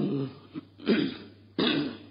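A man, the preaching monk, clears his throat twice: a rough rasp about a second in and a stronger one near the end, just after a recited word trails off at the start.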